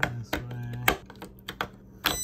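AA batteries being pressed into an electronic deadbolt's battery compartment, snapping past the spring contacts: several sharp plastic-and-metal clicks, the loudest in the first second.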